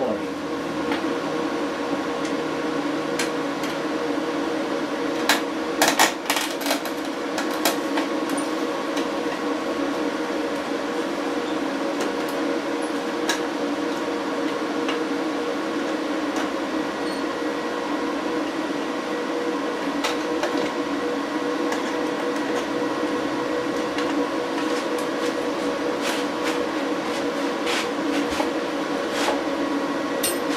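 Solar inverters and their transformer running, a steady hum and whir with several steady tones held throughout. Scattered clicks and knocks come over it, most in a cluster about five to seven seconds in, as the plastic cover of the transformer box is handled and lifted off.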